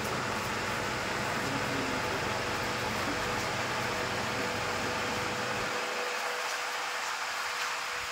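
Steady noise from aquarium equipment: air from an air line bubbling through the water, with a steady pump hum. A low rumble under it drops away about six seconds in.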